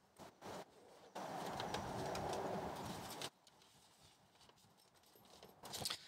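Zip on a fabric soft carry case being pulled open in one steady run of about two seconds, starting about a second in, with a few light clicks of the zip pull before it.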